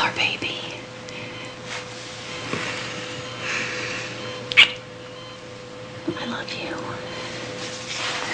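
Soft whispering, close and hushed, over a steady electrical hum. One short sharp sound comes about halfway through.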